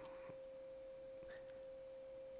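A faint, steady, single-pitched tone with nothing else over it: a constant background tone in the recording.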